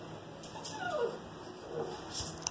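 A dog whining at the front door, one falling whine about half a second in. It is the sign that the dog knows a familiar person is arriving.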